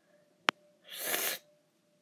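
A single sharp click, then a short, breathy exhale lasting about half a second.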